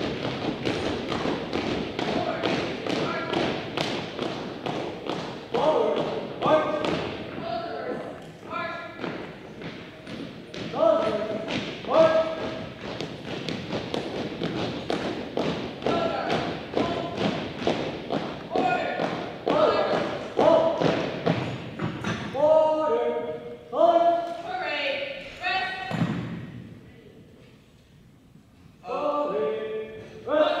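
Color guard cadets marching in step on a hardwood gym floor, their footfalls thudding in a steady cadence, with drawn-out drill commands called at intervals. The footfalls thin out and the sound falls off near the end as the guard halts.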